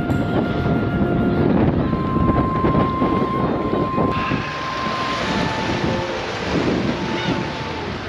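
Wind blowing hard across the camera microphone, a loud steady rush with a few faint held tones over it; the hiss turns brighter about halfway through.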